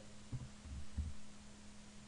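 A steady low electrical hum on the recording, with three or four soft low thumps in the first second as the web address is typed on a computer keyboard.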